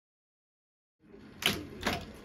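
Hands working the reels and tape path of an Otari MX5050 BII reel-to-reel tape deck, starting about a second in: two sharp mechanical clicks about half a second apart over a low room background.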